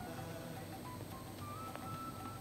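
Faint room ambience in a small hall, with a few faint beeps stepping upward in pitch and a single click about three quarters of the way through.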